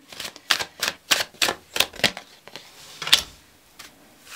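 Tarot cards being drawn from a deck and laid down on a wooden tabletop: a run of quick sharp clicks and taps, about three a second, with a lull near the end.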